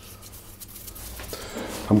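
Faint dry rustling of floury hands being rubbed together over a bowl, working the crumbly flour-and-butter mixture off the fingers.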